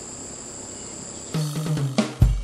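Steady high-pitched insect drone in the background, then music with drums starts about one and a half seconds in.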